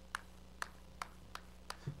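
Chalk tapping on a blackboard, dotting points onto a drawn grid: five short, sharp taps about a third to half a second apart.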